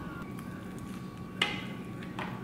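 Quiet room tone with a faint steady hum, and one short click about a second and a half in.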